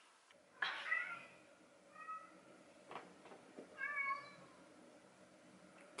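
Domestic cat meowing three times, short calls spaced about one and a half seconds apart, with a faint click between the second and third.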